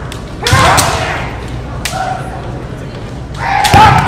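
Kendo fencers' shouted kiai cries with bamboo shinai strikes and stamping feet on a wooden floor, echoing in a large hall: a shout with a thud about half a second in, a sharp crack near 2 s, and another shout and strike near the end.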